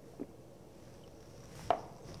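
Quiet background with two short clicks: a faint one just after the start and a sharper, louder one near the end.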